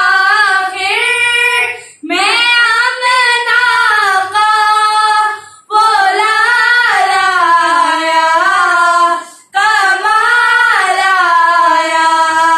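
Two children, a girl and a boy, singing an Urdu naat together in unison without accompaniment, in long melodic phrases broken by three short pauses for breath.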